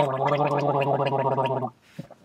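A man gargling a mouthful of water, voicing one steady low tone through it with a fast bubbling flutter. The gargle cuts off suddenly about a second and a half in.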